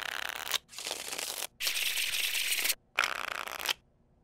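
A deck of playing cards riffling rapidly, shuffled in four quick bursts with short gaps between them.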